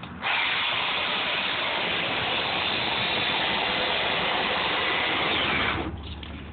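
Chainsaw running steadily for about five and a half seconds, a high, hissy whine that starts abruptly just after the beginning and cuts off suddenly near the end.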